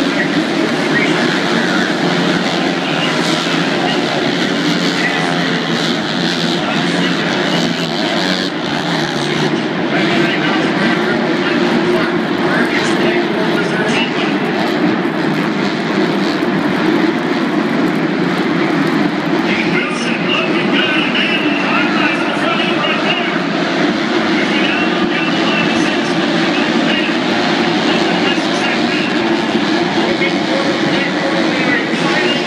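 Pack of 250cc four-stroke supercross bikes racing around an indoor stadium track, their engines blending into a steady, echoing din, with voices mixed in throughout.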